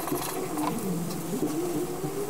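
Felt-tip marker rubbing and scratching on paper in short strokes as figures are written. Behind it runs a low, steady pitched sound that wavers, dipping about a second in and rising again.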